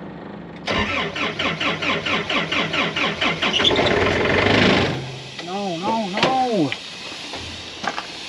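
Portable air compressor's diesel engine cranked on its starter, about four even compression pulses a second for some three seconds. It then catches with a louder burst and cuts out again about five seconds in, a shutdown its controller puts down to low engine oil. A few short rising-and-falling vocal sounds follow.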